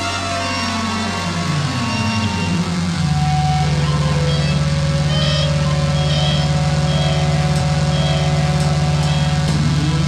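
Electronic synthesizer passage in a live rock song: pitch sweeps slide down and up for the first few seconds, then a loud, steady low note is held, with short high blips repeating less than a second apart.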